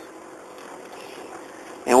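Faint steady background hiss in a pause between a man's spoken sentences, with his voice starting again right at the end.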